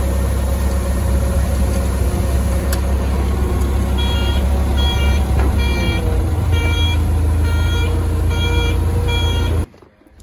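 Toyota forklift engine running steadily, joined about four seconds in by its reverse alarm beeping a little more than once a second while the forklift backs up. The sound cuts off abruptly just before the end.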